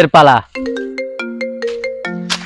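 Mobile phone ringtone: a marimba-like melody of short stepped notes, starting about half a second in after a brief spoken word.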